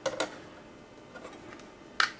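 Two light clicks as the drive-bay cover plate of an Akai MPC Live is handled and lifted off the bay, followed by a few faint small ticks.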